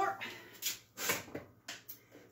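A few short rustles and soft knocks as objects are picked up off a kitchen floor by hand.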